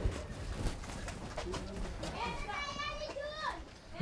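Quiet background ambience with a few scattered knocks, and a voice calling out in the distance for just over a second from about two seconds in.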